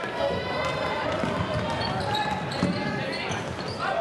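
Live gym sound of a basketball game: sneakers squeaking on the hardwood court, the ball bouncing and the crowd's voices in the hall.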